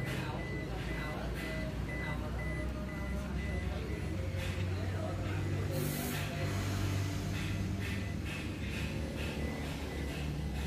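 Low steady hum in the cabin of a 2009 Toyota Innova, with the car's high electronic warning beeper sounding in quick repeated beeps for the first few seconds and again near the end. There is a short hiss about six seconds in, and faint voices and music in the background.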